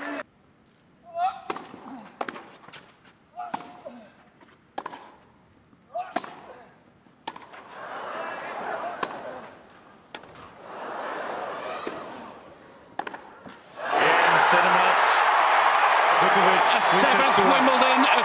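Tennis ball struck back and forth by rackets about once a second, with the crowd's murmur swelling between shots. About 14 s in, the crowd bursts into loud cheering and applause as the winning point is played.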